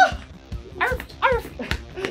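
Short, high-pitched yelping vocal calls, two quick ones about a second in, over background music.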